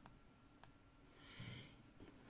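Near silence: room tone with a single faint click about half a second in and a soft breath around the middle.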